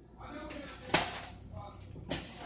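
A single sharp clink of kitchenware about a second in, with faint voices in the background.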